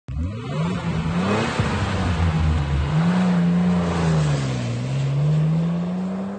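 Car engine revving as an intro sound effect, its pitch rising and falling several times.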